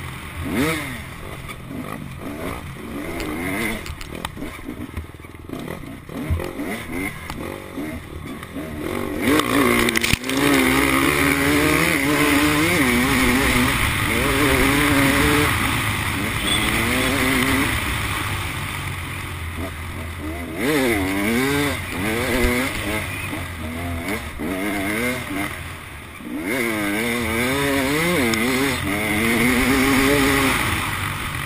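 Dirt bike engine heard close up from the camera bike, revving up and down through the gears as it rides. It works harder and louder from about ten seconds in, eases off briefly about two-thirds of the way through, then picks up again.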